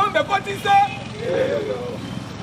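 A man's voice speaking loudly in short phrases over a steady background of street noise.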